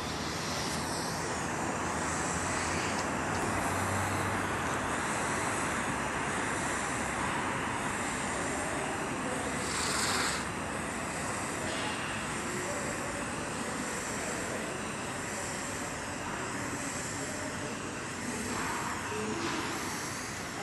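Steady machine-like noise of spray polyurethane foam being applied with a hose-fed spray gun, with a short louder hiss about ten seconds in.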